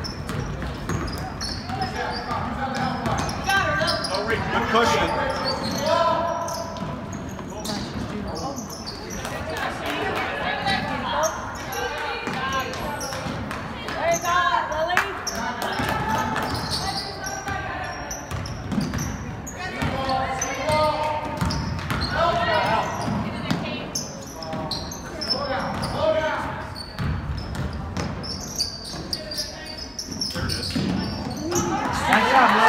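A basketball being dribbled on a hardwood gym floor amid steady talk from spectators and players.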